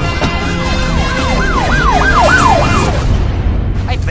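Siren yelping in quick rising-and-falling sweeps, about three a second, over a sustained music bed; the siren fades out shortly before the end.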